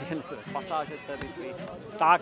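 Indistinct talking voices, with a single sharp click a little past a second in.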